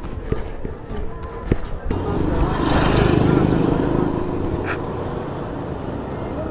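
A few light footsteps, then street traffic: a motor vehicle passes close, swelling to its loudest about three seconds in and fading away.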